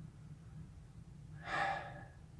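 Quiet room with a steady low hum, then, about one and a half seconds in, a man draws one short, audible breath.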